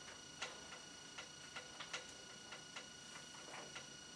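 Felt-tip marker writing on a whiteboard: a dozen or so faint, short ticks and scratches at irregular intervals as the tip taps and strokes across the board.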